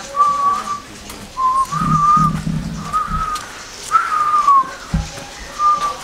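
A person whistling a tune in short phrases, the notes gliding up and down, one longer phrase falling in pitch about four seconds in. A dull thump comes about five seconds in.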